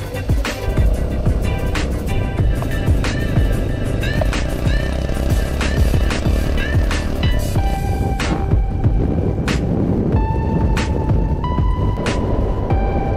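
Background music with a steady beat and a stepping melody, over a low rumble.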